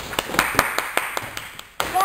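A quick run of sharp hand claps, about five a second, ending in a louder burst of noise just before the end.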